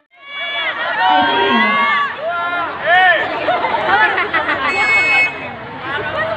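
Many young voices shouting and calling out over one another, high-pitched and excited, with a short high steady tone about five seconds in. The sound drops out briefly right at the start.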